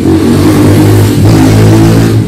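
A motor engine running loudly, its pitch shifting slightly as it revs.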